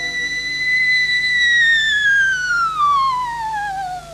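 Coloratura soprano holding an extremely high, pure note near the top of her range with almost no vibrato. About halfway in it turns into a slow, smooth downward glissando.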